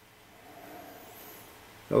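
Faint, steady whirr of a simple homemade DC motor: a coil of enamelled copper wire spinning fast, its bare wire axle turning in bent wire supports.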